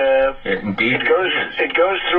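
A man's voice talking in a recorded playback, thin and radio-like, with nothing above the upper midrange.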